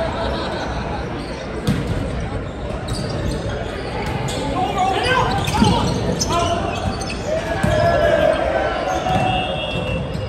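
Volleyball rally in an echoing gym: several sharp knocks of the ball being hit, over a steady murmur of players and onlookers, with players calling out in the second half.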